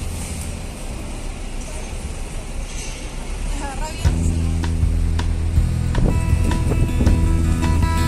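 City traffic noise heard from the open top deck of a sightseeing bus, with a brief voice, then background music comes in about halfway through.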